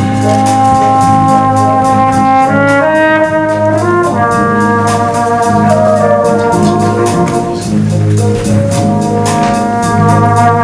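Brass band playing a slow ballad: long-held chords that shift every second or two, carrying a tenor horn solo.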